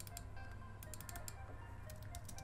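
Quick, irregular keystrokes on a computer keyboard, faint, over quiet background music.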